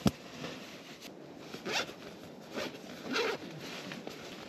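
A zipper on camping gear pulled in three short strokes, with a sharp click just at the start.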